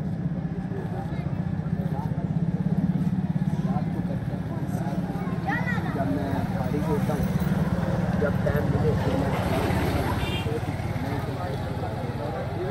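Small motorcycle engine running close by with a steady low putter that grows louder a couple of seconds in, over the chatter of voices in a busy market street.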